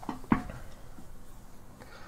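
Two short clicks in the first half second, the second louder, then a few fainter ticks over quiet room tone.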